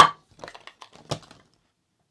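Plastic case of a cheap switching power adapter being opened by hand: one sharp plastic snap at the start, then a few lighter clicks as the clip-held case is lifted apart, going quiet in the last half second.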